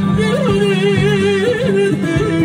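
Male Kurdish folk singer holding one long, wavering ornamented note into a microphone over amplified band accompaniment with a steady drone and a beat.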